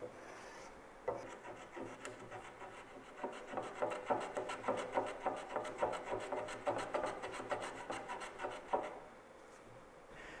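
Hand block plane shaving the end of a mahogany cross-member in short, quick strokes, about three a second, starting about a second in and stopping near the end. The plane is trimming off a ridge left by the router bit.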